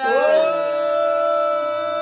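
A singer's voice holding one long, steady note at the end of a sung line, sliding up into it at the start.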